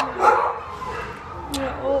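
A dog whining in thin, drawn-out whimpers, one long whine through the middle and shorter ones near the end.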